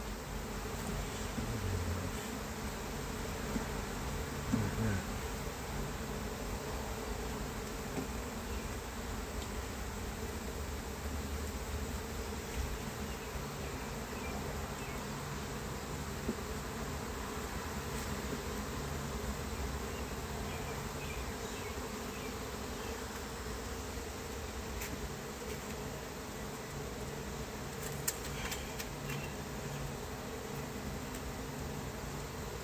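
Honey bees buzzing steadily over an open hive, a continuous hum. A few light clicks come near the end.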